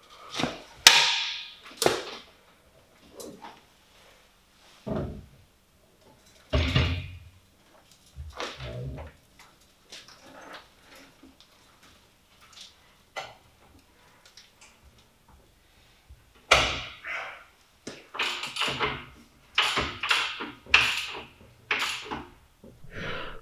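Scattered metal clunks, thuds and scrapes as a KE10 Corolla body shell is rolled over on a home-built rotisserie, with a busier cluster of knocks near the end.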